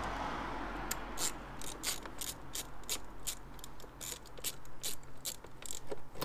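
Ratchet wrench with a 7 mm socket loosening a bolt, its pawl clicking in a steady run of about three or four clicks a second.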